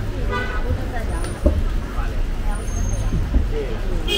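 Street traffic ambience: a steady low rumble of vehicles, with voices talking in the background and a brief knock about a second and a half in.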